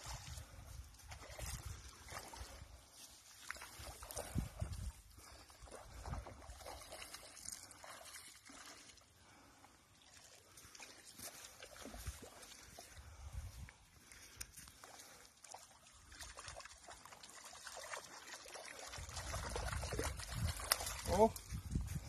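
Water sloshing and dripping as a landing net is lifted out of a loch, with wind rumbling on the phone microphone and scattered handling knocks. The rumble grows louder near the end.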